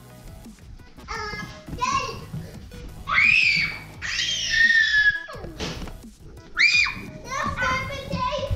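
Young children squealing and shrieking excitedly in high, sliding cries, the longest starting about three seconds in, with background music underneath.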